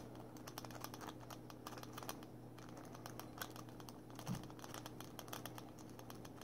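Faint, rapid, irregular metallic clicking and scratching of a W-shaped lock-pick rake being scrubbed back and forth in a padlock's pin-tumbler keyway. No pins are setting.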